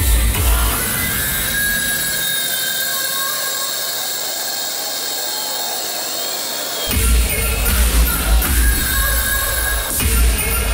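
Hardstyle electronic dance music from a live DJ set, heard as festival sound-system audio. The kick drum drops out about a second in for a breakdown of sustained synth tones, and the hard kick beat comes back in near the seven-second mark.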